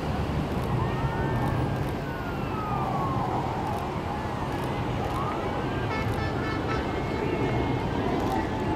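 Steady low jet rumble of the Boeing 747 Shuttle Carrier Aircraft's four engines as it flies overhead carrying space shuttle Endeavour. Several higher tones slide up and down over the rumble.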